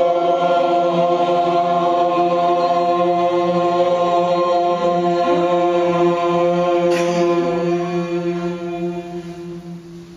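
A group of voices chanting one long held tone together in unison, fading away over the last two seconds.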